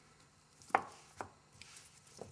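Picture cubes knocking against each other and the wooden tray as hands lift and set them down: a sharp knock about three-quarters of a second in, a lighter one just after a second, then a few faint clicks.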